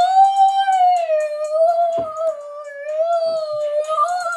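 A girl singing one long, high held note that wavers slightly in pitch, with a single thump about halfway through.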